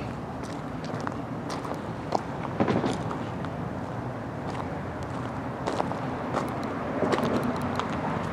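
Footsteps crunching on gravel, irregular short crunches over a steady background of city traffic noise.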